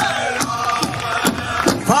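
Powwow drum and singers: a steady, fast drumbeat under high, gliding voices, with crowd noise behind.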